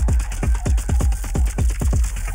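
Electronic dance music from a DJ mix: a steady kick drum and ticking hi-hats.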